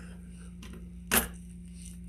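A few faint taps, then one sharp click about a second in, from a screwdriver and the hard plastic housing of a motor contactor and its overload block being handled.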